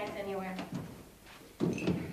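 A wordless voice, rising and falling in pitch like an exclamation, at the start. Then, near the end, a short loud clatter of a bag or luggage being set down.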